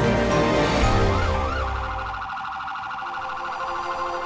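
Police siren: two slow rising-and-falling wails about a second in, then a fast warble that carries on, over background music.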